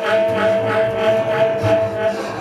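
Free improvised jazz trio: a tenor saxophone holds one long steady note over a bowed double bass, while an acoustic archtop guitar is struck in quick repeated strokes, about three a second.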